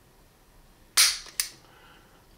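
The hammer of a Wilson Combat Beretta 92 snaps forward as its single-action trigger breaks under a trigger pull gauge, dry-firing with one sharp metallic click about a second in. A smaller click follows a moment later. The break here measures about 2 lb 12.8 oz.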